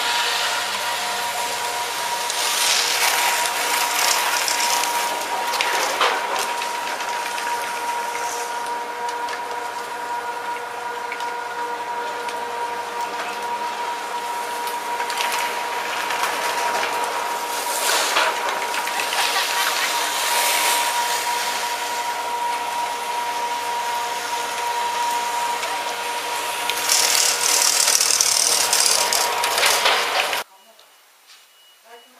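Chairlift station machinery running, a steady whine over a hiss, with louder noisy surges several times and the loudest stretch near the end.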